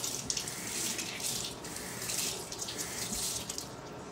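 Water running from a tap: an even hiss that wavers a little in loudness.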